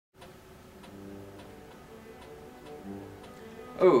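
A clock ticking softly, about twice a second, under quiet background music with slow held notes; a man's voice comes in with "Oh" right at the end.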